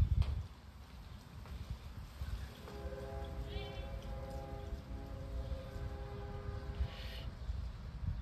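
Low, uneven rumble of wind on the microphone, and a faint steady drone of several held tones from about three seconds in until about seven.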